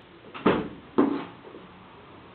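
Two short bangs about half a second apart, the second fading with a brief ring.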